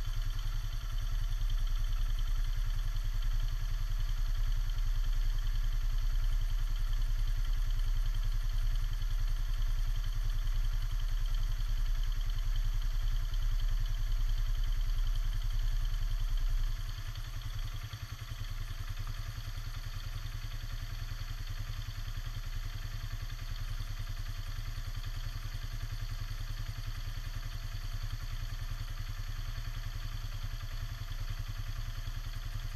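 ATV engine idling steadily with a low, even drone; about seventeen seconds in it drops to a quieter, lower idle.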